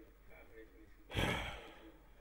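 A man sighs, one breathy exhale about a second in, blown close into a headset boom microphone, which adds a low rumble.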